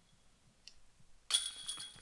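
A disc golf putt hitting the basket's metal chains: a sudden metallic clash a little past halfway, followed by a high jingling ring that fades. The putt is made.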